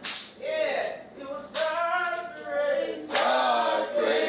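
Unaccompanied singing voices in a hymn-like chant, in held phrases about a second and a half long, each opening sharply.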